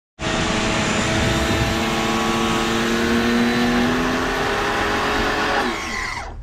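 TEANDE 1400 W electric pressure washer running, its pump motor humming under a loud steady hiss of the water jet spraying onto vinyl siding. Near the end the spray stops and the motor hum drops in pitch as it winds down.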